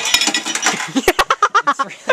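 A rapid run of small clinks and clicks from hard objects being handled, with two sharper knocks a little past a second in.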